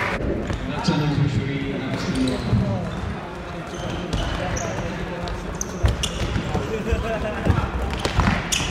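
Futsal ball kicked and struck on a sports-hall floor, a few sharp thuds in the second half, among players' shouts and voices echoing around the hall.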